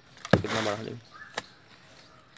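A sharp knock about a third of a second in, followed at once by a man's short vocal utterance, then a lighter click a second later.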